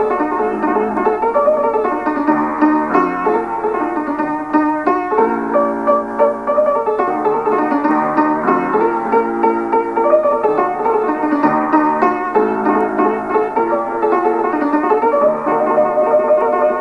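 Ethiopian instrumental piano music: a steady stream of quick, bright melody notes over a lower accompaniment.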